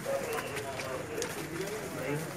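Indistinct background voices of men talking at a low level.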